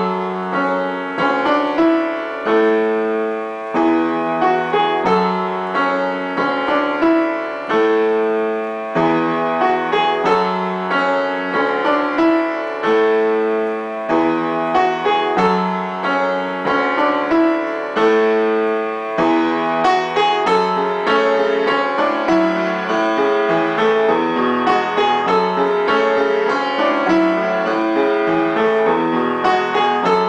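Upright piano played solo with both hands: a steady series of chords struck about once a second, turning busier with quicker notes in the last third.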